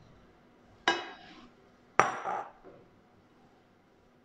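Two sharp clinks of a glass jug knocking against a stainless steel mixing bowl, about a second apart, the second louder, each with a brief ring.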